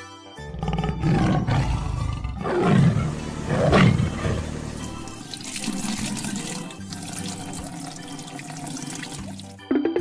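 Cartoon tiger roar sound effects over light background music, followed by a gushing, pouring-liquid sound effect as paint flows from a tanker's hose onto apples. A rising 'boing' glide starts just before the end.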